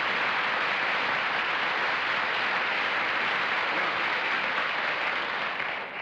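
Studio audience applauding steadily, fading out near the end.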